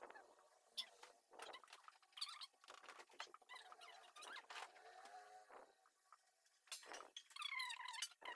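Faint strokes of cheese being grated by hand on a flat metal grater, with wavering squeaks between the strokes.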